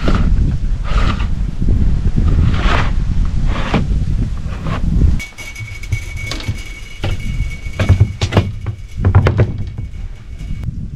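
A wooden board and a brick being handled and set down on the top of a plastic water tank, giving a series of knocks and thunks that come closest together in the second half. A heavy low wind rumble on the microphone runs through the first half.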